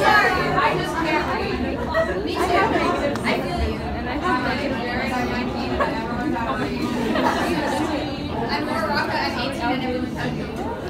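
Speech only: people talking and chattering in a large room, poorly captured so that the words are unclear.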